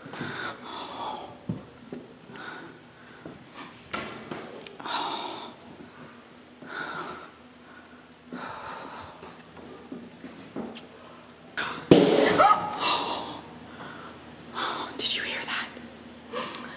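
Hushed human vocal sounds: whispering and breathing, with a louder voiced sound that slides in pitch about twelve seconds in.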